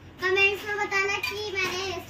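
A child's voice singing, a few held notes on a nearly level pitch, beginning a moment in.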